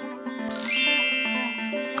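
A bright chime sound effect about half a second in, sweeping upward and then ringing out in high shimmering tones as it fades, over light background music.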